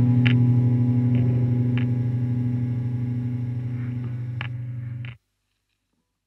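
Final chord of distorted electric guitars ringing out through the amplifiers and slowly fading, with a few light clicks over it, then cutting off abruptly about five seconds in.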